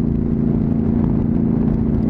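Honda CTX700's parallel-twin engine running steadily at highway cruising speed, an even droning note over a low rumble.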